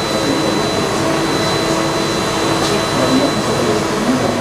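Steady, loud rushing noise of a fan or air-handling system, with a thin high-pitched whine running through it.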